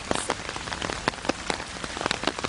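Steady rain falling, with many sharp taps of individual drops striking close to the microphone.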